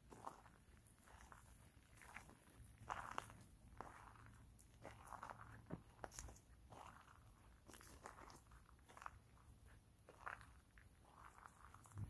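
Faint, irregular crunching of footsteps in dry fallen leaves.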